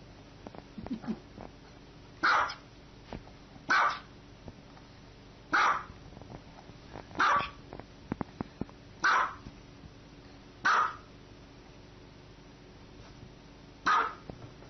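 Small dog barking single barks, six of them spaced about a second and a half to two seconds apart.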